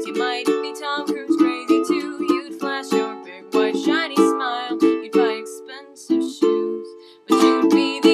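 Ukulele chords strummed in a steady rhythm in a small room, with a voice singing over them. Just before seven seconds the sound fades almost away, then the strumming comes back in strongly.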